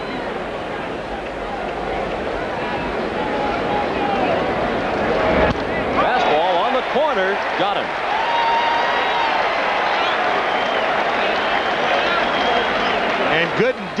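Ballpark crowd cheering and applauding a called third strike, swelling from about two seconds in, with scattered shouts above the noise.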